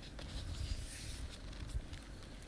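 Paper pages and card cover of a picture book rustling and rubbing under the hand as the book is closed and turned over.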